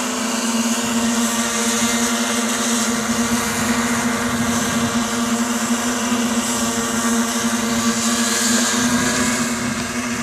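Radio-controlled model helicopter with a truck-shaped body flying back and forth, its motor and rotor giving a steady high hum that wavers slightly in level, easing a little near the end.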